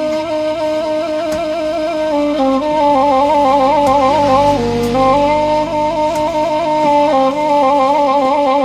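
Background music: a flute-like wind instrument playing a melody of held notes with quick ornaments.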